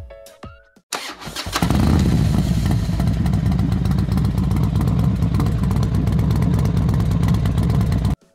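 Motorcycle engine starting about a second in, then running steadily with a fast, even beat of exhaust pulses.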